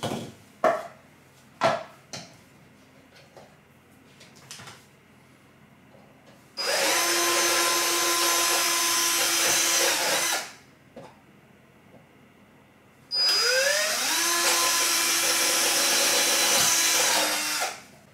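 Cordless drill boring into a plastic mount in two runs of about four seconds each, the second spinning up with a rising whine. A few sharp knocks and clicks from handling come in the first few seconds.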